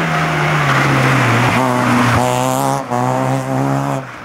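Opel Astra hatchback rally car's engine at high revs as it goes past: the engine note falls over the first second and a half, then climbs to a higher steady note with a brief break near three seconds, as at a gear change. Its tyres squeal briefly a little after two seconds in.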